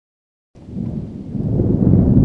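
Silence for about half a second, then a deep rumble rises and swells louder, an intro sound effect under the opening title card.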